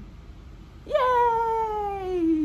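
A woman's high-pitched, drawn-out playful cheer, a single long call that jumps up sharply about a second in and then slides slowly down in pitch.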